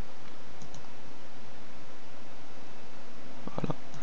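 Steady hiss of recording background noise, with a couple of faint mouse clicks under a second in.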